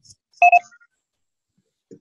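Two short electronic beeps in quick succession about half a second in, from the Zoom meeting software as its computer audio is connected; a faint low thump near the end.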